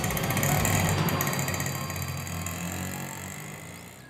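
Auto-rickshaw engine running as the three-wheeler pulls away, growing steadily fainter over the last few seconds.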